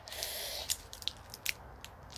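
A thin branch being bent hard with both hands and not breaking: a soft rustle and strain at first, then a few faint sharp clicks from the wood.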